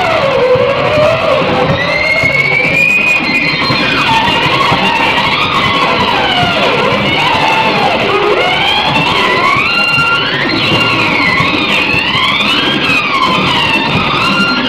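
Guitar instrumental: a lead line that keeps sliding and bending up and down in pitch over a dense, steady backing.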